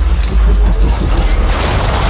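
Sound design of a giant machine powering up: a deep rumble under dense mechanical clanking and creaking, rising to a bright rushing surge near the end as its energy beam fires.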